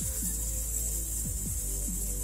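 A man hissing out a long, steady breath through his teeth like a snake: the slow, controlled exhale of a singer's breathing exercise.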